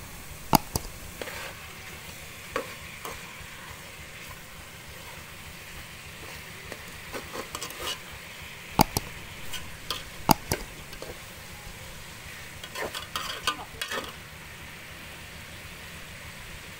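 A metal ladle stirring pangasius fish pieces in an aluminium pot, clanking against the pot's side now and then, the loudest knocks about half a second in and twice around the middle, with runs of lighter taps near the end. A steady sizzle of the fish frying in its sauce runs underneath.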